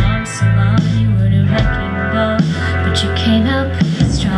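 Live indie rock band playing: electric guitars, bass guitar and drum kit, with strong low bass notes and drum hits through a loud, full mix.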